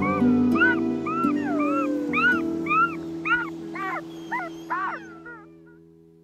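Wolf cubs whining: a run of about a dozen short, high squeaks, each rising and falling in pitch, coming faster in the second half and fading away near the end, over soft music with held notes.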